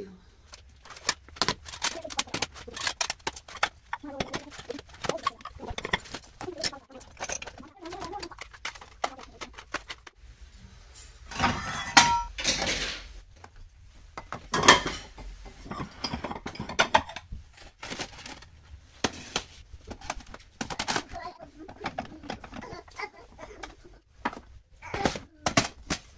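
Plates, bowls and plastic containers clattering and knocking as they are taken out of a kitchen cabinet and shifted around, in many short, irregular knocks with a louder clatter about 12 s and 15 s in.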